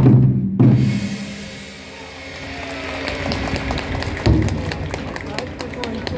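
Japanese taiko drums struck in two big final hits about half a second apart, ringing out. Then crowd voices rise, with one more low thump about four seconds in.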